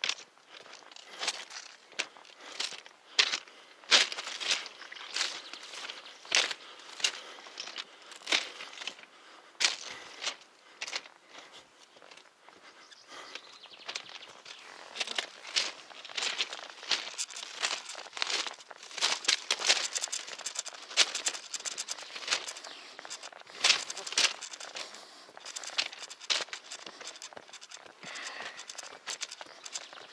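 Footsteps crunching on the gravel ballast of a railway track at a steady walking pace.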